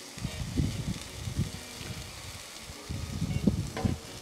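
Diced bell peppers sizzling faintly in sesame oil on a flat-top griddle as a spatula stirs them, under a low, uneven rumble of wind on the microphone.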